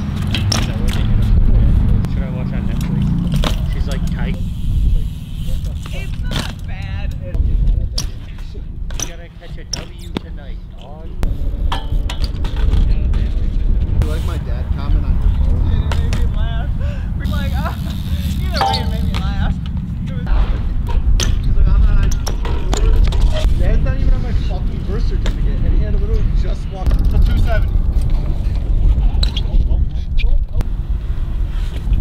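BMX bikes riding on a concrete skatepark: tyres rolling over the concrete, with sharp knocks and clacks from hops, landings and the bikes' parts, over a steady low rumble. Voices come in briefly now and then.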